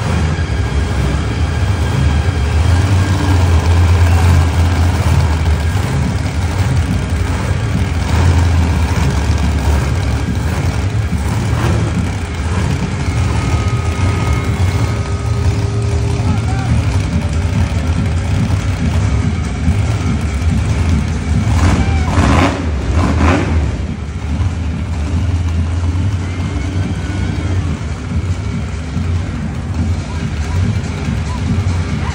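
Monster truck engines running on the arena floor, a loud, steady low rumble. Between about two-thirds and three-quarters of the way through, a few brief loud bursts of hiss cut over it.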